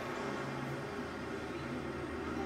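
A film soundtrack playing quietly through a screening room's speakers: a low, steady hum.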